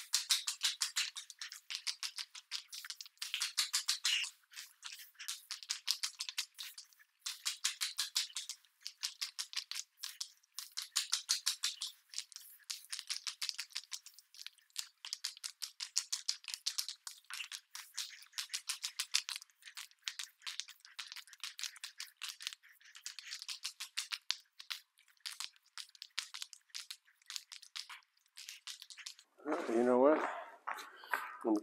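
Wet epoxy crackling under an 18-inch roller as it is back-rolled across a concrete floor: a fast run of tiny sticky clicks in spells about a stroke long, with short pauses between strokes.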